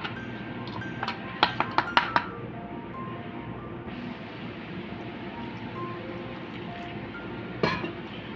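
A spoon clinking against a steel bowl as dry flour is stirred, several sharp clinks in the first two seconds. From about four seconds, a soft steady pouring hiss as water is added to the flour, under quiet background music.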